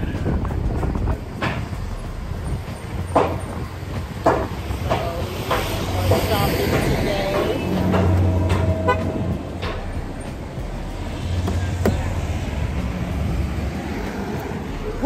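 Street traffic: vehicle engines running with a low rumble that swells a few times, with a few short knocks and background voices.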